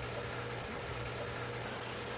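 Steady low machine hum with a faint watery hiss: the running background of pond and dehumidifier equipment. No separate drip sounds stand out.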